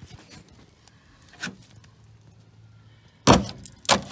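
Steel screwdriver jabbing and scraping into rust-rotted sheet steel on a VG Valiant's wheel arch: faint scratches and taps, one sharper tap about a second and a half in, then a loud crunching scrape near the end as the tip digs through the crumbling rust.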